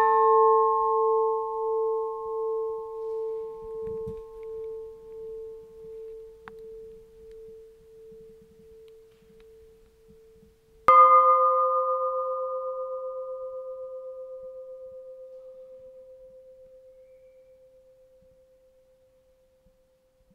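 Two old church bells, each struck once and left to ring. The Gildeklok's note, already sounding, dies away with a slow pulsing wobble. About eleven seconds in, the Jhesus bell is struck, a slightly higher note that fades over about eight seconds.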